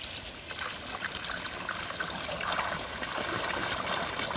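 Spring water pouring from a white PVC pipe and splashing into a concrete fish pond, a steady rush of water.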